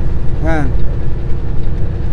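Semi-truck's diesel engine pulling hard with a heavy load (79,000 lb gross) up a long grade: a steady low rumble heard from inside the cab. A short vocal sound breaks in about half a second in.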